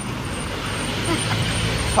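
Road traffic passing close by: a steady low rumble of vehicle engines and tyres that grows louder near the end.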